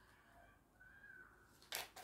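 Near silence, then near the end a brief rustle and riffle of a tarot deck being shuffled in the hands.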